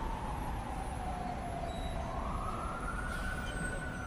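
A siren wailing over a low rumble: its single tone slides slowly down, then rises again about two seconds in and holds high.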